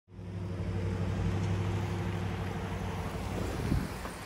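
Engine of a van driving up close, a steady low hum that fades near the end as it pulls up and stops.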